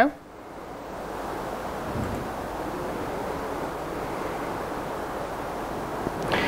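Gale-force wind blowing outside, heard from inside a workshop as a steady rushing noise that builds over the first second and then holds even.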